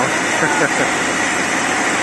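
Sawmill machinery running with a steady noise and a thin, high, constant whine, under faint voices.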